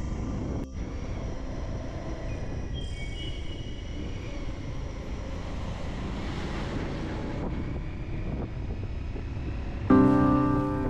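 Motorcycle engine and wind noise from a ride on a wet road, a steady rumble. A truck passing close adds a rush of noise about six seconds in. Faint background music plays underneath.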